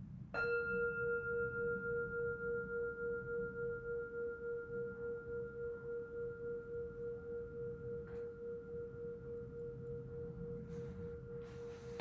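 Meditation singing bowl struck once, about a third of a second in, ringing on with a pulsing waver and a long, slow fade. It marks the close of the silent meditation period.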